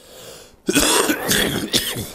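A man coughing and clearing his throat: a short breath in, then a run of harsh coughs lasting about a second and a half.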